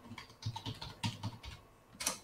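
Typing on a computer keyboard: a quick, irregular run of light keystrokes as a short command is typed and entered.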